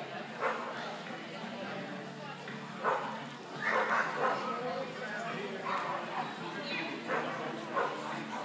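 A dog yipping and barking repeatedly in short bursts, over background voices.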